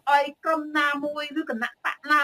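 Only speech: a woman talking in Khmer, heard through a video call.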